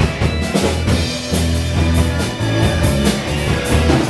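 Live rock band playing: electric guitars, electric bass and drum kit, with steady cymbal and drum hits keeping a regular beat.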